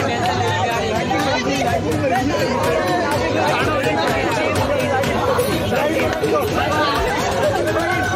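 Many young men talking and laughing at once, a loud, dense babble of overlapping voices with no single speaker standing out.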